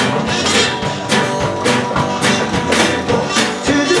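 Live acoustic country-rock jam: strummed acoustic guitar over a drum kit keeping a steady beat of about two hits a second, in an instrumental gap between sung lines. A man's voice comes back in near the end.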